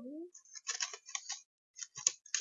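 Small beads and charms clicking and rattling against each other as fingers rummage through a bead tray: a run of light, quick clicks from about half a second in, then a short second cluster near the end.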